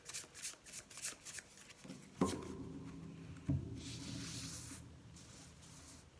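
A deck of oracle cards shuffled by hand: a rapid run of card flicks, then two sharp knocks of the deck against the table, followed by a soft sliding rustle as the cards are spread out across a cloth.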